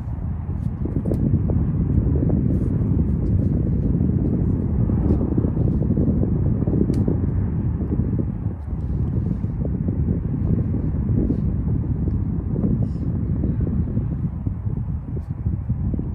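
Wind buffeting the microphone: a steady, loud low rumble with a few faint small clicks over it.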